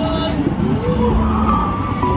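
Hankai Tramway streetcar rolling slowly past at close range, a low rumble swelling about halfway through, with music and voices in the background.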